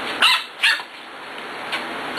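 Pembroke Welsh corgi puppy, about seven weeks old, giving two short, high-pitched yapping barks about half a second apart near the start.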